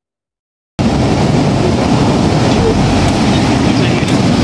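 Waves breaking on a sandy shore: a loud, steady rush of surf with a heavy low rumble, cutting in suddenly under a second in after silence.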